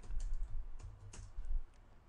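Computer keyboard typing: a quick run of key clicks that stops about three-quarters of the way through.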